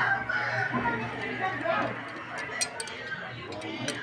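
A bird calling in the background, drawn out and pitched, over a few light metallic clicks in the second half.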